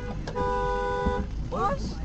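Car horn honking: a short blip at the start, then one steady honk of about a second.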